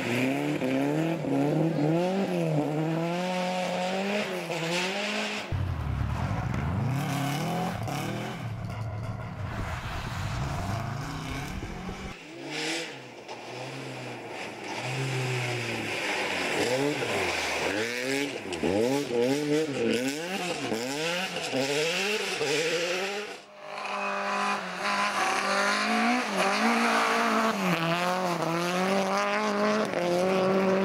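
Rally car engines revving hard and falling away again and again through gear changes as the cars pass one after another. The sound changes abruptly a few times, and one stretch carries a deep rumble.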